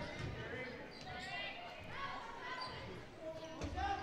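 A basketball bouncing on a gym's hardwood floor during play, under scattered crowd and player voices echoing in the hall.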